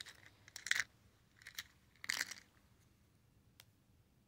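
Plastic press-on nails clicking and scraping against each other and the clear plastic organizer tray as fingers pick through a compartment: three brief rattles about a second apart, then a faint tick near the end.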